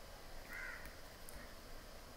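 Quiet room tone with one faint, short bird call about half a second in.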